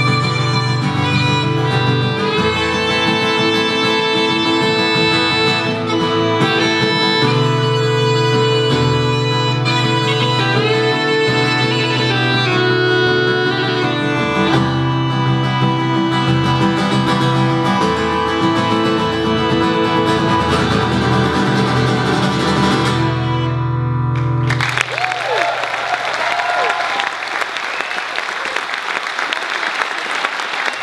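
Live band playing the closing bars of a folk song, with guitar and a sustained melody line over a steady low bass. About 25 seconds in, the music stops abruptly and the audience applauds.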